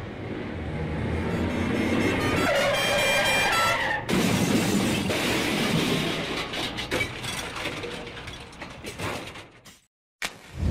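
Car crash sound effect: a building rush with a car horn sounding about three seconds in, then a sudden loud impact about four seconds in, followed by clattering and knocking that fades away over the next few seconds.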